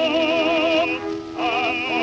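Tenor and baritone singing a slow duet with orchestra, played from an old Columbia 78 rpm shellac record, the sound cut off above the upper treble. A held note with wide vibrato breaks off about a second in, and a new phrase begins shortly after.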